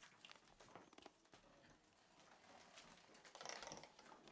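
Near silence: faint room tone with a few light ticks and a brief soft rustle near the end.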